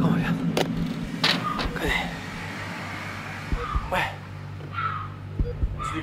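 Low, brief bits of a person's voice with a few sharp clicks over a steady low hum.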